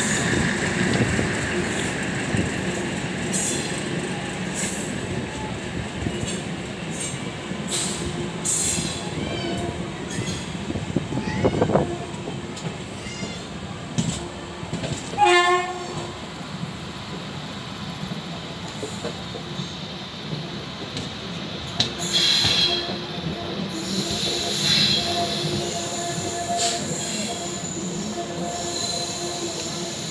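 LHB passenger coach wheels rolling slowly over the track and pointwork on the approach to a junction, with clicks over rail joints and crossovers and high wheel squeals. A short train horn blast sounds about halfway through.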